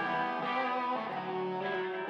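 Live rock band playing, led by sustained electric guitar chords and notes through the stage PA.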